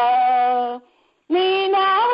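A woman singing a Malayalam Christian hymn unaccompanied, holding a long steady note that ends just under a second in; after a short breath pause she comes back in on a higher note.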